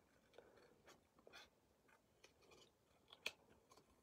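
Near silence with a few faint snips of small scissors cutting black cardstock by hand, scattered short clicks, the sharpest one a little over three seconds in.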